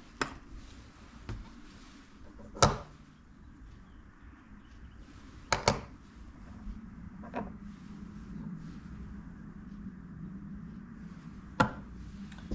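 Steel milling cutters and thin slitting saws clinking against one another as they are handled and set down: a few scattered sharp metallic clinks, the two loudest about two and a half and five and a half seconds in.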